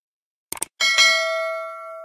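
A quick double mouse-click sound effect, then a bright bell ding with several ringing tones that fades over about a second and then cuts off: the click-and-bell effect of a subscribe animation.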